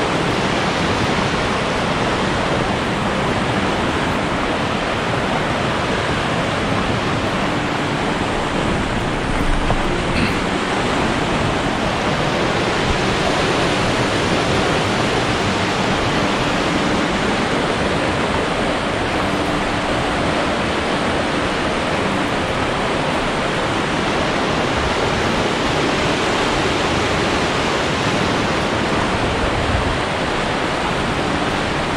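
River water rushing over a rocky, stair-stepping rapid, a steady, even rush of whitewater.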